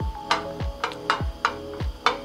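Background music with a steady electronic beat: a deep kick drum about twice a second with light ticking over held synth chords.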